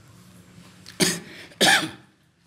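A man coughing twice into a handheld microphone, about a second in and again half a second later; both coughs are loud.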